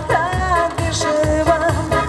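Live disco polo band amplified through a stage PA: a woman singing over keyboards and a steady dance beat.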